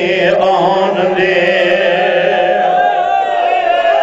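A man chanting a drawn-out, melodic Punjabi lament in the style of a zakir's majlis recitation, with long held notes and a sustained note through the second half.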